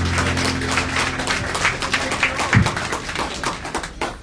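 Audience clapping after a live song, over a held low bass note from the band that fades out about a second and a half in, with a single low thump a little past halfway.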